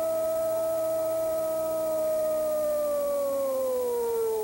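A football commentator's long drawn-out goal cry: one voice holds a single high shouted vowel at a steady pitch, then slides down in pitch in the last second.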